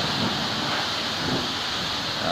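Pressure washer spraying water steadily onto a pickup truck.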